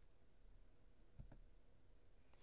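Near silence with room tone and two faint, closely spaced clicks a little over a second in.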